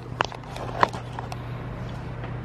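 A few brief light clicks and taps over a steady low hum: handling noise as the camera is picked up and swung away.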